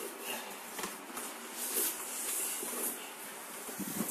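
Cardboard rubbing and scraping as the tight lid of a large cardboard box is slid and lifted off, with a few light knocks.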